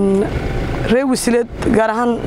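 A woman speaking, with a low rumble under her voice.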